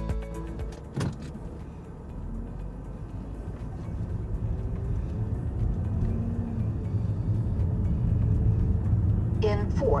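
Low, steady rumble of a car driving along a road, growing gradually louder, after a short bit of music ends about a second in.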